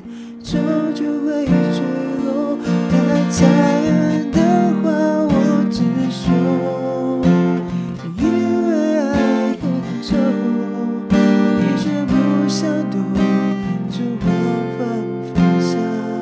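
Acoustic guitar strummed steadily under a man's voice singing a slow Mandarin pop ballad.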